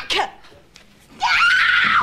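A woman screaming as she falls down a staircase: one long, high scream that starts about a second in, rises and is then held.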